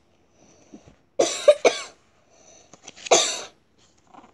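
A person coughs twice, about a second in and again near three seconds, each a short harsh burst. Between the coughs come the soft rustle and small clicks of a picture book's pages being turned.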